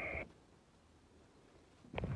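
A high, steady whine stops abruptly about a quarter second in, followed by near silence until sound returns suddenly at the very end.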